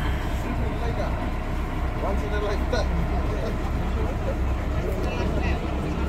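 Boat engine running steadily under way, a low even drone, with the rush of water and wind along the hull. Faint voices talk in the background.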